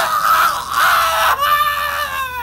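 A man's high-pitched, drawn-out scream, voiced for a cartoon character. It is one long cry that drops slightly in pitch a little over a second in.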